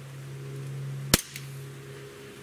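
Barra 1911 CO2 blowback BB pistol firing a single shot of a 5.1 grain zinc BB, one sharp report about a second in.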